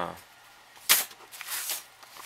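Thin photo-etched metal sheets being handled: one sharp snap about a second in, then a few brief scraping rustles.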